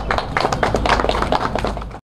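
A small group of people clapping, irregular hand claps that fade away near the end.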